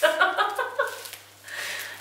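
A person's voice for about the first second, then a short lull, over a faint steady low hum.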